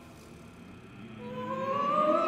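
Choir singing held notes, soft at first; about halfway through the voices slide upward in pitch together and swell louder.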